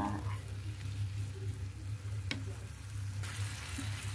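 Vegetables and tofu sizzling in a hot pan as a wooden spatula stirs the stir-fry, with one sharp tap of the spatula against the pan a little past halfway; the sizzle grows brighter near the end. A steady low hum runs underneath.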